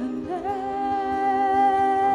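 A woman's voice holding one long, steady, wordless sung note in a slow worship song, over a soft sustained accompaniment.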